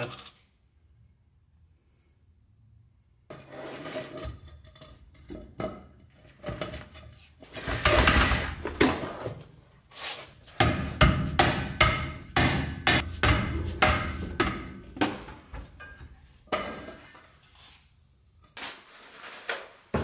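Metal clanks and knocks from a rusty driveshaft and its U-joint being handled and fitted up under a truck, an irregular run of sharp strikes after a few seconds of quiet, thickest in the second half.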